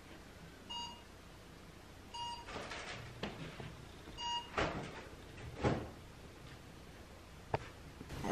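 Three short electronic beeps, a second and a half to two seconds apart, with soft thumps and rustles between them and a sharp click near the end.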